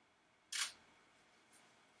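Canon EOS 6D Mark II DSLR shutter firing once for a single photo: one short, sharp click about half a second in.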